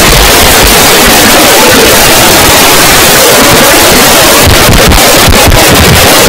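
Loud, steady, heavily clipped noise filling the whole range, with no clear voice or other recognisable sound in it: an overdriven, distorted audio track.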